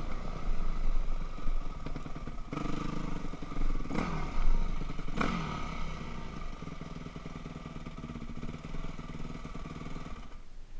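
A Yamaha YZ250F's four-stroke single-cylinder engine runs at low speed as the dirt bike slows to a stop, then idles. There are two short, sharp rev blips about four and five seconds in, each falling away quickly.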